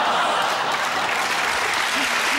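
Studio audience applauding steadily.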